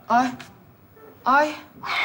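Two short dog barks about a second apart, followed near the end by a longer breathy hiss.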